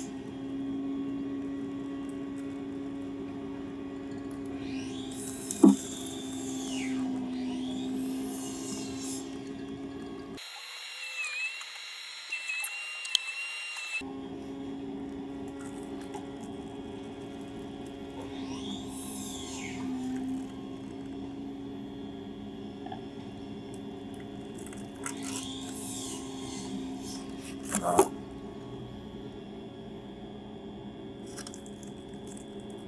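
Steady low buzz of a wasp's beating wings inside a wooden nest box, breaking off for a few seconds near the middle, with a sharp knock about six seconds in and another near the end.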